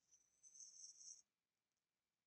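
Near silence: room tone, with a faint high hiss for about the first second.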